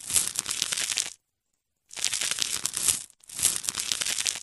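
Crackly, crinkling scraping noise, dense with tiny clicks, heard in three bursts of about a second each with short silent gaps between. It is the sound of a knife scraping growths off the foot.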